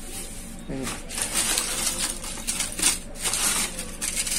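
Plastic bag crinkling and foil-and-plastic blister packs of pills rustling and clicking against each other as a hand rummages through a bin of them, an irregular crackle starting about a second in.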